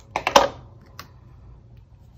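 A quick cluster of sharp clicks and taps from paper and a craft tool being handled on a wooden tabletop, loudest about half a second in, then a single light tap about a second in, as a punched paper sentiment is picked up and set onto a card.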